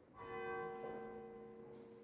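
A bell struck once: a sudden stroke, then a long ring of several overlapping tones that slowly fades.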